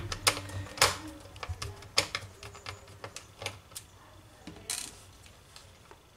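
Sharp, irregular clicks and taps of small parts and fingers on a laptop's plastic base, the three loudest in the first two seconds, then fainter ticks and a short rustle about three-quarters of the way in.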